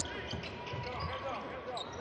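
Arena sound of a basketball game: indistinct voices from the crowd and court, with faint thuds of the ball bouncing on the hardwood floor.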